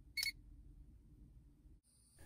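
A single short electronic beep from the handheld automotive circuit probe, about a fifth of a second in, then faint room tone.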